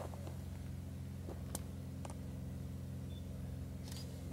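A steady low hum, with a few faint clicks and knocks scattered through it.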